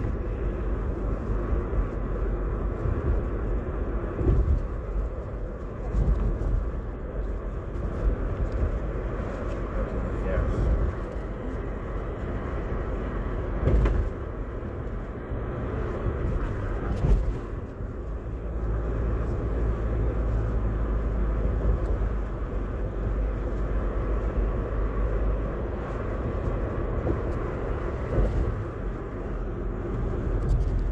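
Steady low road and engine rumble of a car driving, heard from inside the cabin, with a few brief louder bumps along the way.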